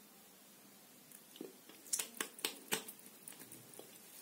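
Lips and a lip-gloss applicator making a quiet run of small wet clicks and smacks as fresh gloss is spread and the lips are pressed together. The clicks start a little over a second in and come about four a second at their busiest.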